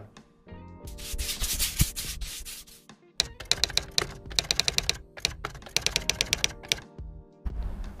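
Logo-intro sound effects: a soft swish, then several quick runs of typewriter-like clicks, about ten a second, over a held musical chord.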